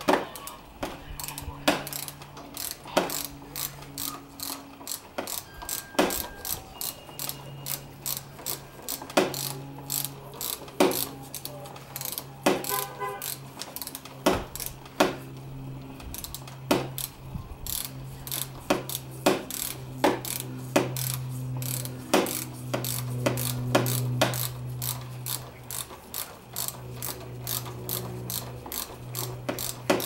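Socket ratchet wrench clicking in short irregular runs as it turns the banjo bolt into a motorcycle brake master cylinder, tightening the brake-line fitting.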